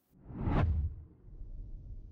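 A transition whoosh sound effect: a swelling rush with a deep low rumble that peaks about half a second in and dies away within about a second, leaving a faint low rumble.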